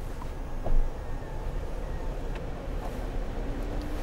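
Power rear seat of a Lexus LS 500h moving into its reclined position with the leg rest extending: a faint electric motor hum over a steady low rumble, with one brief knock near the start.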